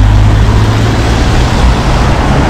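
Road traffic: cars driving past close by, a steady rush of tyre and engine noise with a low rumble.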